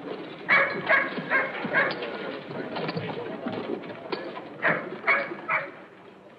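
Horses' hoofbeats on dirt under two quick runs of short shouted calls from the riders, four about a second in and three more near the end.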